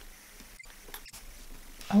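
Faint, scratchy rubbing of gouache being worked across paper, broken by two brief dropouts in the sound, with a short spoken 'oh' at the very end.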